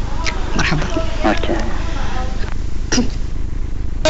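A person's voice in a few short, broken utterances, with a brief sharp sound near the end.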